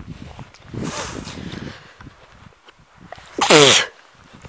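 A person sneezing once, loudly, near the end, the voiced part of the sneeze dropping in pitch.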